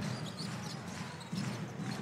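A basketball being dribbled on a hardwood court over the steady noise of an arena crowd.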